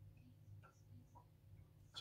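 Near silence: a low steady room hum with a few faint light ticks as small wooden craft pieces are handled.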